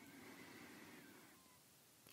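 Near silence: room tone in a pause between spoken sentences, with a faint soft sound lasting about the first second and a half.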